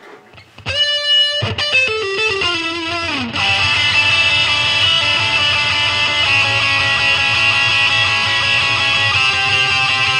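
Electric guitar rock music: a held note, then a quick run of falling notes, then from about three seconds in a loud, full, sustained passage.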